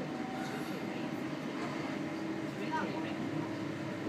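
Class 323 electric multiple unit running at speed, heard from inside the carriage: a steady rumble of wheels and running gear, with a steady hum that sets in about a second in.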